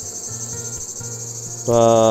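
Steady, high-pitched chirring of a field insect chorus, with a faint low hum beneath it. A man's voice says a word near the end.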